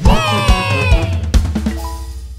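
Theme jingle of a children's cartoon: drum beats and bright chords, with a high voice-like cry sliding down in pitch during the first second. The jingle then settles into a held final chord.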